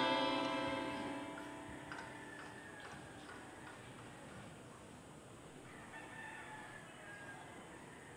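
String music fading out in the first second or two, then a rooster crowing faintly about six seconds in.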